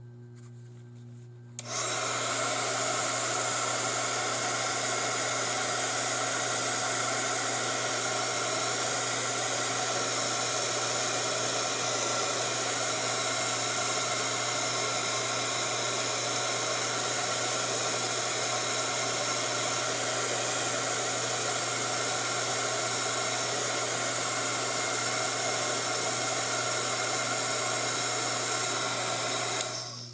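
Handheld craft heat gun switched on about two seconds in, blowing steadily for nearly half a minute to dry wet watercolour paint, then switched off just before the end.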